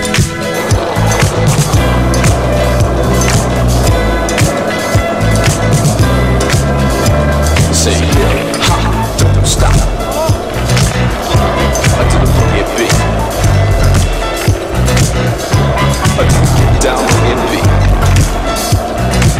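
Skateboard wheels rolling on asphalt, with sharp clacks of the board popping and landing, over music with a steady bass line.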